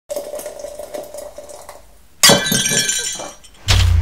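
Channel logo intro sound effect: a faint wavering tone, then a sudden loud crash with a bright ringing tail about two seconds in. A deep low boom follows near the end.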